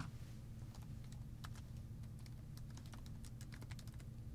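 Typing on a computer keyboard: a run of faint, irregular keystrokes, coming thicker in the second half, over a steady low hum.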